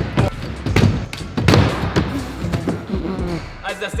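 Heavy skateboard deck with fat pennyboard-style wheels hitting and clattering on a skatepark floor during a failed kickflip: several hard knocks in the first second and a half, then lighter knocks.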